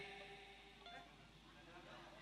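Near silence: a faint steady hum in a pause between spoken phrases.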